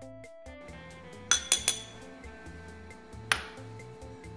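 A metal spoon clinking against small glass bowls: three quick clinks about a second in, then a single clink near the end.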